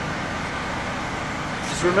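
Steady background noise of a car engine idling, with no distinct events; a man's voice starts near the end.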